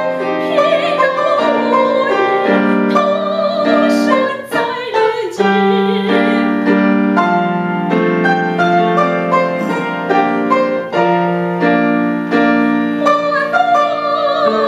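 A woman singing in a classical, operatic style with a wide vibrato, accompanied by a grand piano. Her voice rests for a stretch in the middle while the piano plays on, and comes back near the end.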